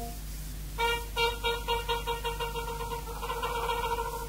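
Trumpet playing a run of short repeated tongued notes on one pitch, about four a second, starting after a brief pause about a second in, over a steady low hum.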